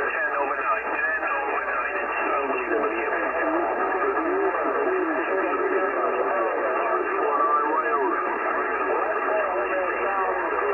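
Many voices talking over one another through a CB radio on lower sideband: a pileup of long-distance skip stations all calling at once. The sound is continuous, thin and narrow in tone, with no single voice standing out.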